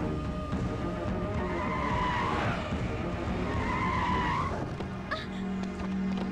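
Car tyres squealing on asphalt twice, each squeal about a second long with a bending pitch, over a music score. A sharp click follows shortly before the end.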